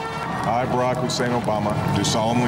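A voice speaking; the words were not transcribed.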